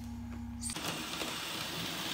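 Model train's small electric motor humming steadily as it runs round the track, with a low pulsing under one clear tone. The hum cuts off suddenly under a second in, leaving a faint room hiss.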